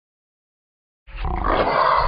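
Lion roar sound effect: a single loud, rough roar that starts about a second in.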